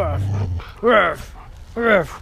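Dog giving two short barks, each rising then falling in pitch, about a second apart, after a low rumble at the start.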